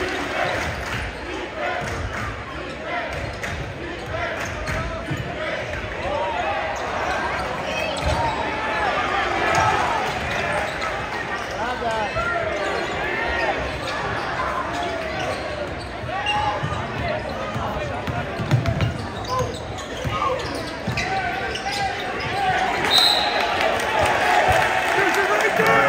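Basketball game in a gymnasium: a ball bouncing on the hardwood court under the chatter and shouting of the crowd in the stands, echoing in the large hall. The crowd gets louder near the end.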